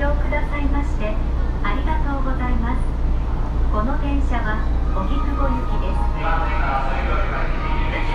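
A woman's voice speaking, with a hollow underground-station echo, over a steady low hum.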